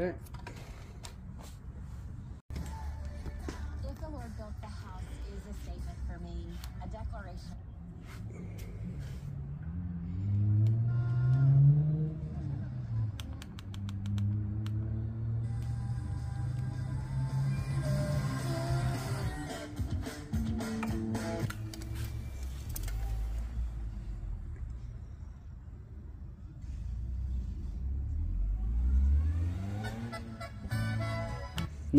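A Bose Wave radio (AWRCC1) tuned to an FM station, playing music and voices through its own small built-in speakers. It is being tested after a capacitor repair. A few clicks of handling and button presses come first.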